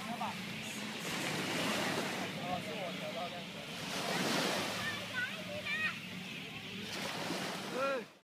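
A steady outdoor rushing noise that swells twice, with people's voices talking briefly over it.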